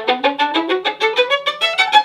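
Violin played with a bouncing spiccato bow stroke: rapid short notes climbing a scale, each with a sharp click at the start. The stroke is way too percussive, the bow dropping onto the string without moving horizontally enough to draw a resonant sound.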